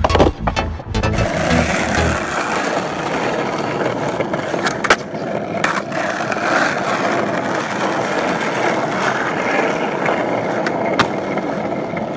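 Skateboard wheels rolling over rough asphalt, a steady rolling noise, with a few sharp clicks along the way. Electronic music with a beat plays for the first second or two, then stops.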